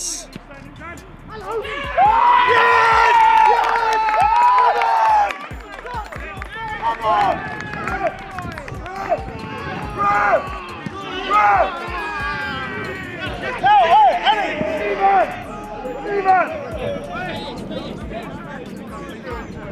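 Footballers shouting and cheering to celebrate a goal: loud, high yells that are loudest from about two to five seconds in, followed by repeated shorter shouts.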